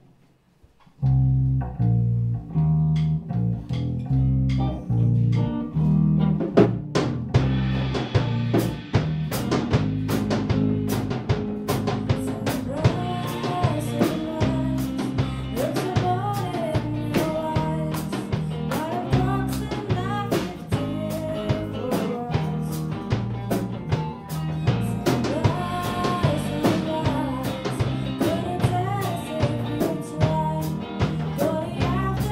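A live rock band starts a song about a second in: electric guitar, electric bass and drum kit, with the drums filling out to a busy beat about seven seconds in. A woman's singing voice comes in over the band about twelve seconds in.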